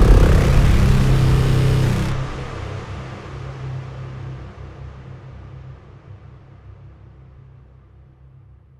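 Closing tail of a dark hybrid trailer music cue: a dense, noisy wash over a low rumbling drone cuts back about two seconds in. The low drone then slowly fades out.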